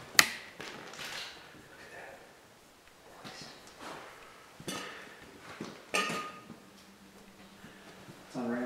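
A few sharp knocks and clicks in a quiet room: one loud one just after the start, then others about a second in and around five and six seconds in. A faint low steady hum comes in near the end.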